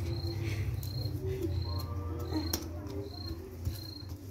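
A cricket chirping, one short high chirp about every 0.7 seconds, over a low steady rumble, with a single sharp click about two and a half seconds in.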